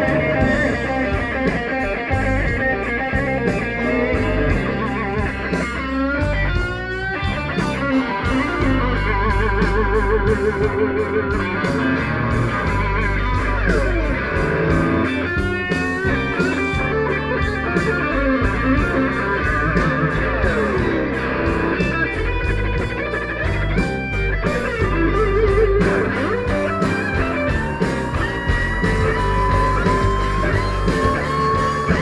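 Live slow-blues band: an electric guitar solo on a sunburst Stratocaster-style guitar, full of wide vibrato, string bends and slides, over bass and drums. A held note bends slowly upward near the end.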